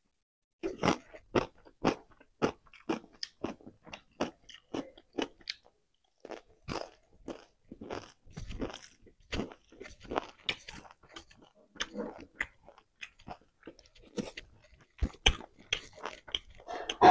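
Close-miked chewing and crunching of a mouthful of fried pork and rice, a quick run of sharp crunches about two to three a second, with a short pause about five and a half seconds in.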